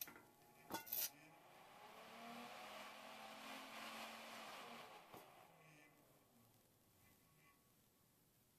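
A knife switch clicks closed about a second in, and a Sunon DC axial cooling fan spins up on 10 V from a bench supply with a rising whir of air. About five seconds in the switch clicks open and the fan whirs down, fading as it coasts to a stop.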